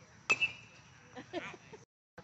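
Metal baseball bat hitting a pitched ball: one sharp ping with a short high ring, about a third of a second in. Brief spectator voices follow.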